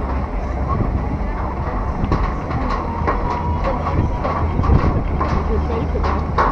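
Hubbub of a large crowd, many voices mixed together, over a steady low rumble.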